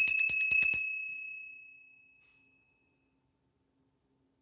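A small metal bell rung rapidly, its clapper striking about ten times a second. The strikes stop a little under a second in and a high ringing tone fades out over the next second or two.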